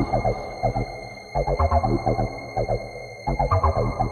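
Tech house music: a repeating synth and bass riff that starts over about every two seconds, with a steady high electronic tone held underneath.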